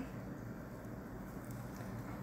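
Faint, steady low background noise with no distinct events: room tone in a pause between narration.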